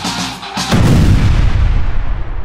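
Electric-guitar intro music breaks off, and about two-thirds of a second in a loud explosion sound effect booms and rumbles slowly away.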